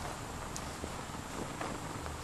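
Steady outdoor background hiss with a few soft clicks scattered through it.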